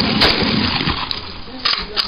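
Saiga 12 semi-automatic 12-gauge shotgun firing one shot about a quarter second in, the last of a rapid string, its report ringing out afterwards. A couple of lighter clacks follow near the end.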